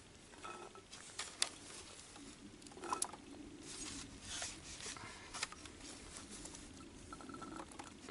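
Ripe black olives scooped by hand and dropped into a glass jar: faint soft pattering with a few scattered light clicks, the loudest about three seconds in.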